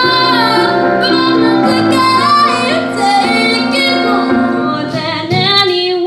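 A teenage girl singing live into a microphone with instrumental accompaniment. About five seconds in, the accompaniment cuts out abruptly and a sung voice carries on.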